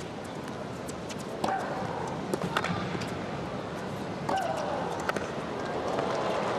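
Tennis rally heard on an indoor arena broadcast: sharp pops of the ball off the rackets and the court, and twice, about three seconds apart, a player's loud shriek on her shot that falls in pitch. Beneath it runs a low crowd hum.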